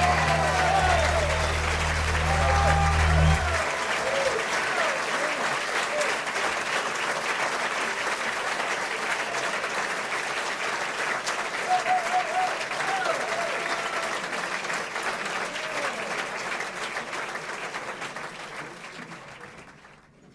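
A final held low chord on the Hammond organ ends about three and a half seconds in, under a live audience's applause with shouts; the applause then carries on alone and fades out near the end.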